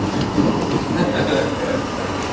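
Steady room hum, likely air conditioning, with a few faint squeaks of a marker writing on a whiteboard around the middle.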